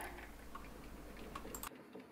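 Quiet background room tone with a few faint, light clicks; the background drops out briefly near the end.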